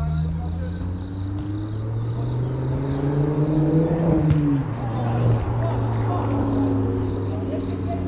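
A motor vehicle's engine running steadily, its pitch rising toward the middle and falling back.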